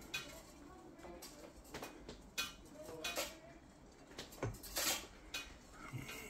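Handling noise: a few light, scattered clicks and taps as the electric guitar is moved and held, against a quiet room.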